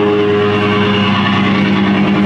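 Loud distorted electric guitar in a live band holding a steady, droning chord, with no drums playing.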